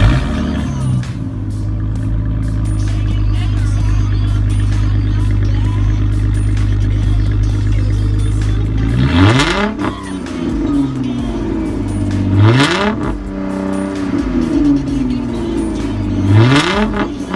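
2006 Dodge Charger engine idling steadily at the exhaust, then revved in three short blips about three seconds apart from about nine seconds in, each rising and falling back to idle.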